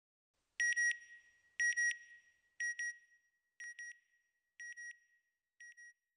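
Short high electronic beeps in quick pairs, repeated once a second six times and growing fainter, the first few with an echoing tail.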